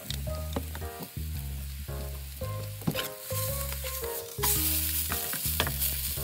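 Bean sprout and egg pancake sizzling in oil in a frying pan, the sizzle growing louder about four seconds in.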